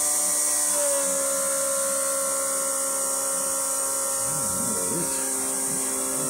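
Electric fuel pump on an engine test stand running with a steady whine and hiss, its pitch dropping slightly and settling about a second in as it feeds fuel to the carburetor.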